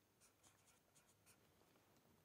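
Very faint felt-tip marker writing on paper: a few short, light pen strokes.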